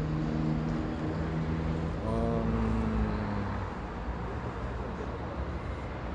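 Street traffic noise: a steady low rumble of passing road vehicles, with a pitched hum that slides down in pitch about two seconds in.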